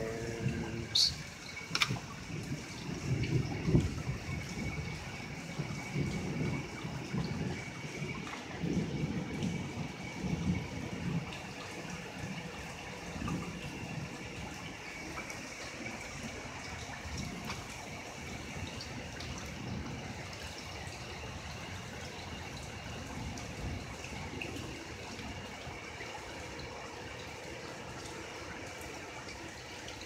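Steady rainfall during a thunderstorm, with low rolling rumbles of thunder through the first ten seconds or so and a couple of sharp clicks near the start.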